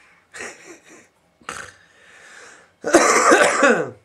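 A man coughing and clearing his throat: a few short coughs, then a longer, louder bout near the end.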